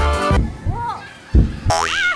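Background music breaks off and comic sound effects take its place: a springy, arching boing-like glide, a dull thud, then a sharp rising glide near the end.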